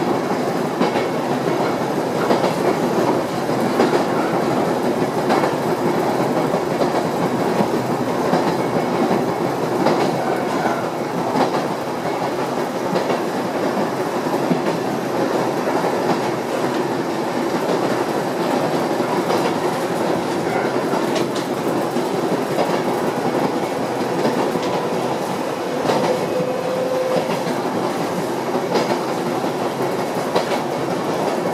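Yoro Railway electric train running along the line, heard from inside the car: a steady rumble of wheels on rails with scattered clicks over rail joints. A faint thin whine rises in for a few seconds near the end.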